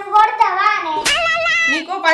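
A young girl speaking in a high voice, drawing out one syllable in the second half.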